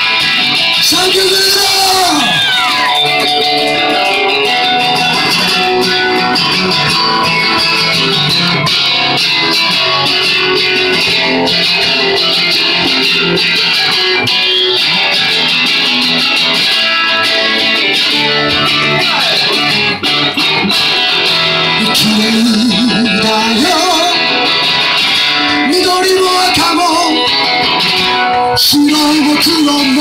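Live band music led by a strummed acoustic guitar. A singing voice comes in about two-thirds of the way through and again near the end.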